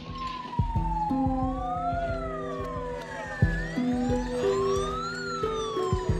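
Emergency vehicle siren wailing, its pitch slowly rising and falling, with two wails overlapping, over background music with a steady beat.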